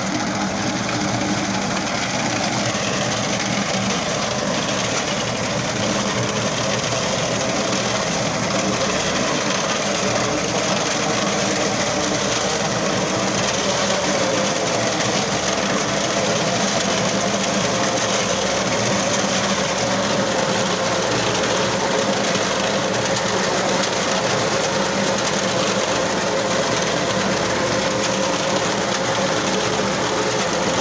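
Tractor-mounted reaper cutting standing wheat: the tractor's diesel engine runs steadily under the fast, even chatter of the reaper's reciprocating cutter bar.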